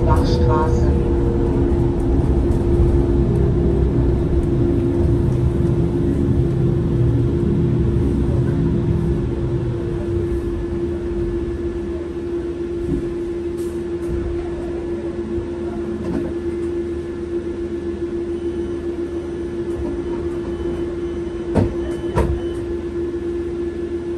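Inside a Solaris Trollino 18 trolleybus: a steady electrical hum from the drive runs throughout, while the low running rumble fades as the bus slows to a halt. Two short knocks come near the end.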